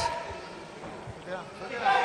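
Faint arena background during a boxing match: a low crowd murmur with a faint distant voice.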